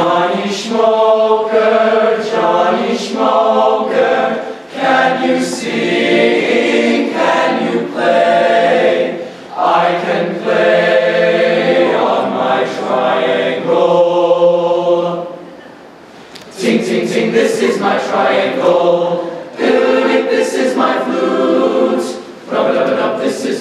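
Male choir singing a cappella, the sound dropping away briefly about sixteen seconds in before the voices come back in.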